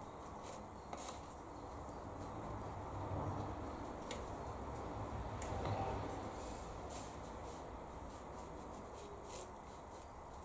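Quiet room tone with soft, scattered taps of a watercolour brush dabbing on paper, and the brush working paint in the palette about six seconds in.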